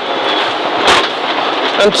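Cabin noise inside a Subaru Impreza N14 rally car at speed on a wet gravel stage: a steady rush of engine, tyre and gravel noise, with one sharp knock about halfway through.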